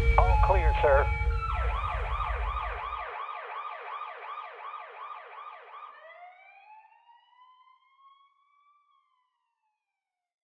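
Siren yelping in quick rising sweeps, about three a second, then winding down in one long glide that fades out. A music track with a heavy bass beat ends about three seconds in.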